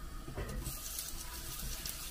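Butter and oil sizzling in a hot frying pan with toasted fennel seeds, a soft hiss that sets in about half a second in as two knobs of butter are dropped into the pan.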